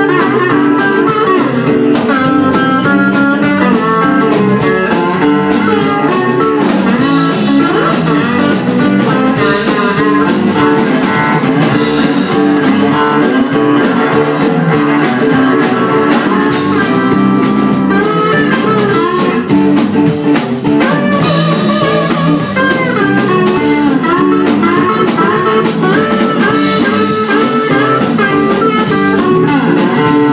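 A live band playing blues: electric guitars playing lines with bent notes over bass and a drum kit with cymbals, loud and unbroken.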